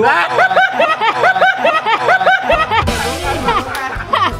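High-pitched laughter in quick, evenly repeated bursts over background music; a deeper bass beat comes in about halfway through.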